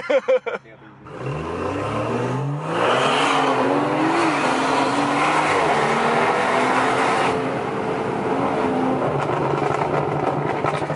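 BMW 340i's turbocharged 3.0-litre inline-six, tuned with full bolt-ons, accelerating hard, heard from inside the cabin. The revs climb from about a second in, break briefly at a gear change, climb again, then hold steadier and a little quieter near the end.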